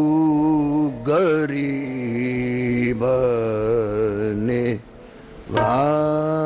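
Sikh kirtan: a male ragi sings the opening invocation, drawing out the word "guru" in long, wavering melismatic phrases over a steady harmonium drone. The singing breaks off briefly near the end and then resumes.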